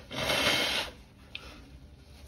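A person's audible breath: one rushing breath lasting just under a second, then quiet with a faint click.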